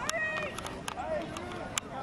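Indistinct shouting and calling voices of spectators and young players across the field, with a few sharp clicks.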